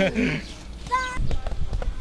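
People talking, with a short high-pitched voice call about a second in, then a few light knocks.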